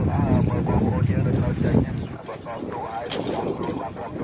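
Bystanders' voices talking and calling out, over a low rumble that fades out about halfway through.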